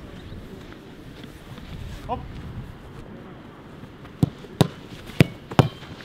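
Footballs kicked hard in a shooting drill: four sharp thuds about half a second apart in the last two seconds, over steady low background noise. A brief shouted call comes about two seconds in.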